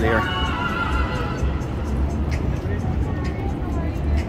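Busy street ambience: a steady low rumble of traffic, with music playing and people's voices.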